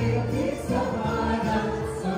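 Live group singing over music: several voices singing together above a steady bass line.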